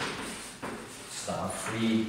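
Chalk scratching in short strokes on a blackboard as a line of writing goes up. A brief voice sound comes near the end.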